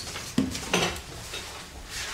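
Crockery and cutlery handled at a kitchen sink and dish rack: two sharp clinks under half a second apart, with lighter rattling of dishes around them.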